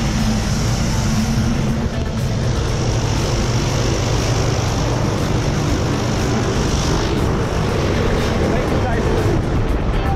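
Propeller airplane engine running steadily at close range, a constant low drone with a hiss above it that eases a little near the end.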